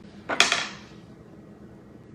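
A single sharp knock with a short ringing tail about half a second in, from hands and utensils working a stainless steel mixing bowl; after it, only faint room tone.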